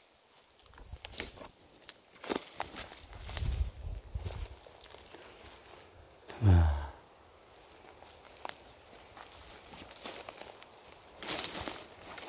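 Footsteps crunching irregularly through pine-needle litter and undergrowth, with brush rustling against the walker. A short falling voice sound, like a grunt or sigh, comes about halfway through.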